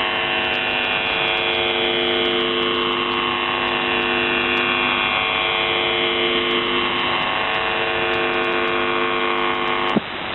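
Shortwave radio reception of The Buzzer (UVB-76) on 4625 kHz: a steady buzzing drone of stacked tones, with whistles sliding down in pitch across it twice, heard through the receiver's narrow audio bandwidth.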